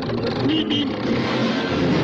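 The cartoon Road Runner's "meep meep" call: two quick, high beeps about half a second in, over a loud, continuous rushing noise.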